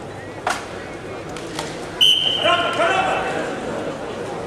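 A referee's whistle sounds once about halfway through, a sudden shrill steady tone that starts the wrestling bout, over voices in the hall. A single sharp clap comes shortly after the start.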